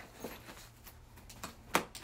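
Handling of an open hard-shell suitcase and the packing cubes inside it: a few soft knocks and rustles, with a sharper knock near the end.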